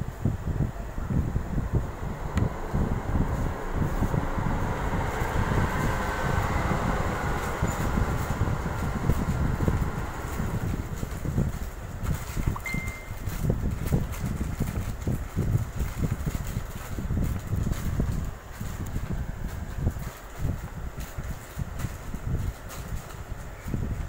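Pencil sketching on paper, with short scratchy strokes, under a loud, uneven low rumble of air or handling noise on the phone's microphone.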